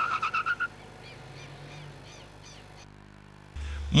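Car tyres squealing in a steady high note that pulses and cuts off under a second in. A faint outdoor background follows, with a run of short chirping calls, and a low hum comes in near the end.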